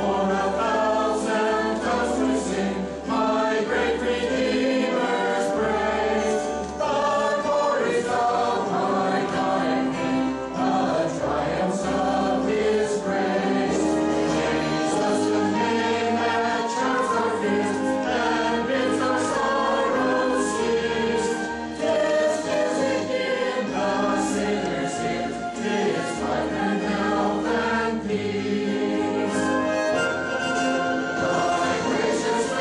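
Mixed church choir of men's and women's voices singing together, with sustained low notes beneath them throughout.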